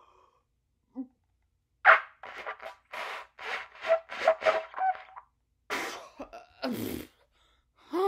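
Trumpet blown deliberately badly: a quick run of short, sputtering, breathy blats with a few brief pitched notes, then two louder, rougher blasts near the end.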